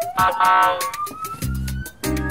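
Comedy wrong-answer sound effects: a rising siren-like glide with a loud tonal burst just after the start, then a low game-show buzzer from about a second and a half in, sounding in repeated blasts.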